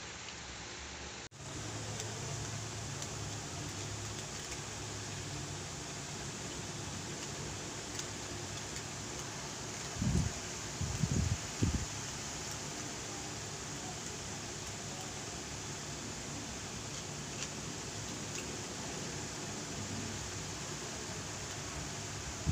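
Steady hiss of room background noise, like a running fan. Three short, dull bumps come between about ten and twelve seconds in.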